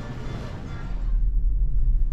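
Background music in the first half, then a steady low rumble of a car driving, heard from inside the cabin, starting about a second in and louder than the music.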